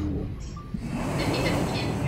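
Low, steady rumbling drone: horror-film sound design under the scene.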